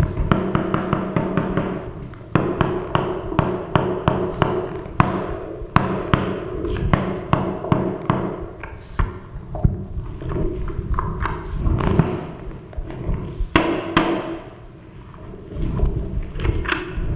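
Field audio from a handheld phone recording: an irregular string of sharp knocks and cracks, with a quieter stretch near the end.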